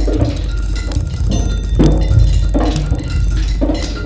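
Drum kit played with sticks in a dense, free, irregular flurry of strokes on the drums. There are low thuds about every second, with ringing metallic tones over them.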